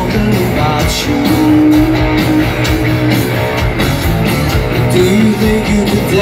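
Live rock band playing through a concert PA: electric guitar, bass and drums, heard from within the audience, with one note held for about two seconds starting about a second in.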